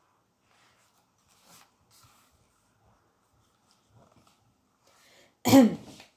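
Near silence, then about five and a half seconds in a woman coughs once, a short loud cough that falls in pitch.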